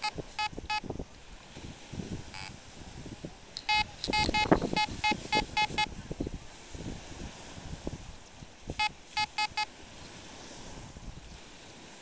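Fisher F22 metal detector beeping in short repeated tones over a buried target: three quick beeps at the start, a longer run of about eight around the middle, and five more later. A hand scrapes and sifts through sand between the beeps.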